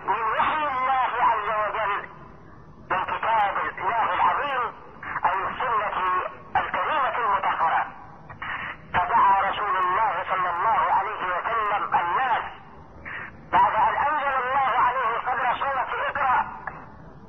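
A man speaking in Arabic over a telephone line, in phrases with short pauses between them.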